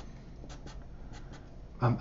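Felt-tip marker drawing on paper: several short, quick strokes, each a brief scratch.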